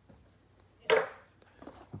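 A cardboard trading-card box knocked down onto the tabletop once, about a second in, with light handling sounds after it.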